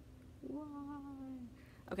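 A woman's drawn-out, sing-song "wahh": one held vowel about a second long, its pitch sinking slightly, a playful mock-dramatic voice for a toy figure. A brief spoken "okay" comes at the very end.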